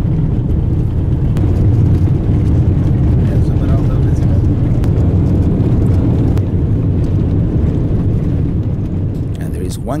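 Steady low rumble of a vehicle driving on a gravel highway, engine and tyre noise heard from inside the moving vehicle, with a few faint clicks from the gravel.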